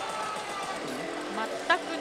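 Initial D pachislot machine playing its in-game sound effects over the steady din of a slot hall, with a short loud sound near the end.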